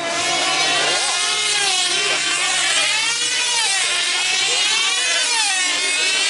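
Several F2C team-race model aircraft engines, 2.5 cc diesels, running flat out with a high whine. Their pitch wavers up and down in overlapping waves as the models circle on their control lines.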